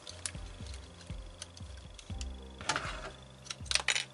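Light clicks and taps of hands working on the opened laptop's internals around the Wi-Fi card: one click just after the start and a quick cluster of clicks near the end.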